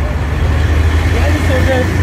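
A jeep's engine running with a low, steady rumble, heard from inside the cabin, with voices talking over it.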